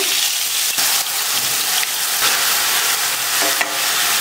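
Onion paste frying in hot oil with cumin seeds in a stainless steel pan: a steady sizzle as the wet paste hits the oil, with a few scrapes of a wooden spatula spreading it.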